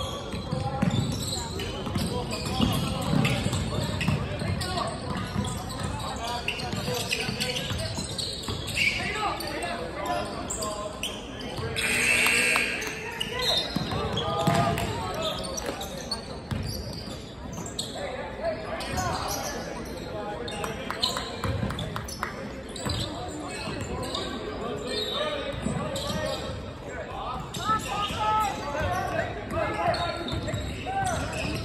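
Basketball game in a large gym: a ball bouncing on the hardwood floor, sneakers squeaking, and players calling out, all echoing in the hall.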